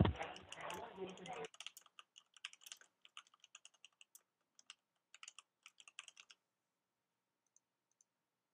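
Typing on a computer keyboard: a run of uneven keystrokes for about five seconds, stopping a little after six seconds in. It opens with a thump, over faint muffled speech heard through a phone line that cuts off about a second and a half in.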